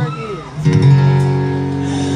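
Live acoustic guitar through a concert PA: a sung note slides down and fades, then a strummed chord rings out about half a second in and sustains.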